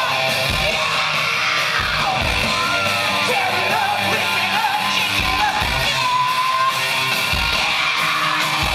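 Loud live electro-punk rock music: distorted guitar, low drum hits and shouted vocals.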